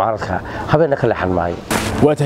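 A man speaking in conversation, with a short hiss near the end and a steady low hum beneath.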